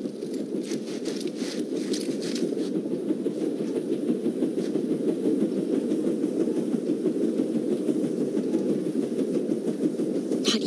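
Armored train rumbling along the rails, growing steadily louder as it approaches, with a few faint clicks in the first few seconds.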